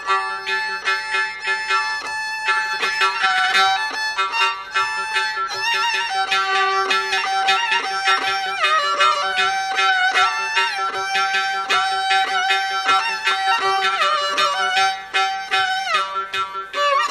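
Carnatic violin playing a melody full of slides and quick note changes, over rapid mridangam and ghatam strokes and the steady drone of a Radel electronic tanpura.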